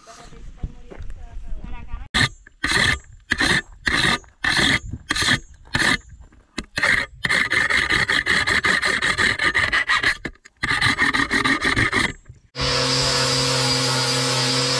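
A hand file rasping along the steel edge of a machete as it is sharpened: separate strokes at first, then quicker, almost continuous filing. Near the end an angle grinder cutting metal takes over, running steadily.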